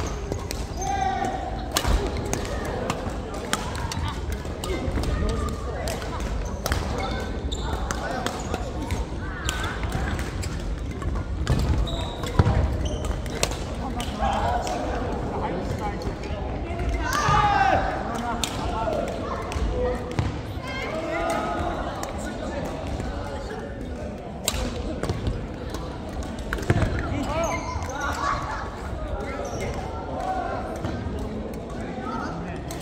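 Badminton doubles rally: sharp racket strikes on a shuttlecock at irregular intervals, with footfalls on the wooden court floor. People talk in the background of the large hall, most clearly around the middle and near the end.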